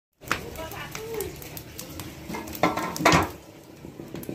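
Indistinct voices talking, with clinks and clatter of dishes and pots in a small kitchen.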